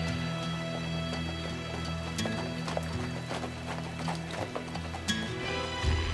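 Horses' hooves clip-clopping at a walk on a dirt street as two riders come in, over background music of held tones. A low thump is the loudest moment, just before the end.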